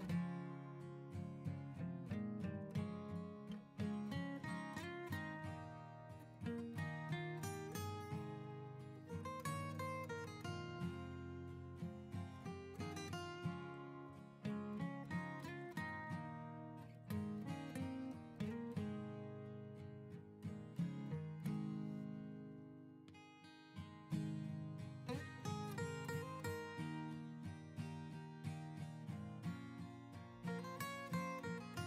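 Background music: an acoustic guitar playing plucked notes.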